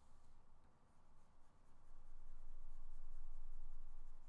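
Faint scratching of a stylus nib on a Cintiq 22HD pen display in quick, repeated strokes, growing louder about halfway through.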